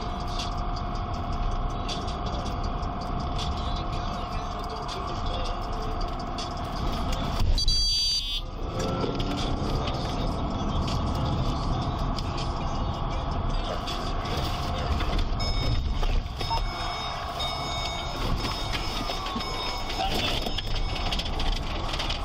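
Police patrol car driving slowly, heard from inside the cabin: a steady run of engine and road noise under a few held tones. There is a brief, louder burst about eight seconds in.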